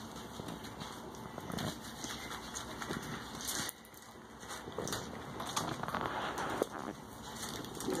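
Hands lathering shampoo into a wet cat's fur in a bathtub: soft, wet rubbing and scrubbing.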